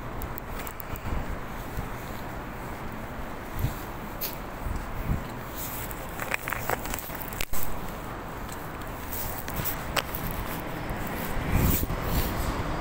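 Footsteps on an asphalt pavement over a steady background of street noise, with a single sharp click about seven and a half seconds in.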